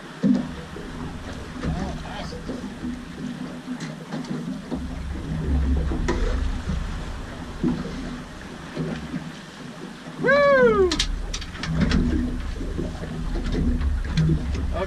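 Wind buffeting the microphone and water moving around the boat, with low, indistinct voices and one short rising-and-falling call about ten seconds in.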